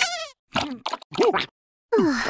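Several short, high-pitched buzzy cartoon noises: the first a warbling squeal falling in pitch, then quick bursts, with a short silence near the end.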